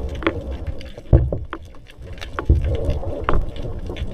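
Water moving against an underwater camera's housing: a low rumble that surges several times, with irregular sharp clicks and knocks.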